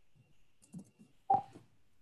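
A few faint computer keyboard clicks, then one short, sharp blip with a clear tone about a second and a third in.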